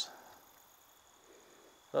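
Near quiet, with a faint, steady, high-pitched insect drone in the background.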